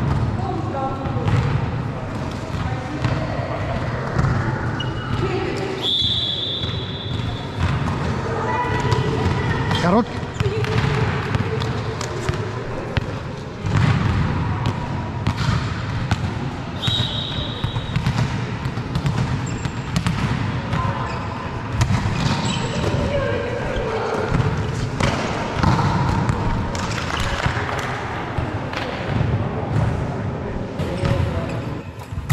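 Indoor volleyball play in a large hall: a volleyball struck and bouncing on the court in repeated sharp knocks, with players' voices throughout. Two brief high-pitched tones sound about ten seconds apart.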